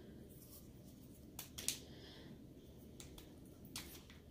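A quiet room with a few faint, short clicks and rustles, loudest a little under two seconds in, as hands handle a seed-coated cardboard tube and its string.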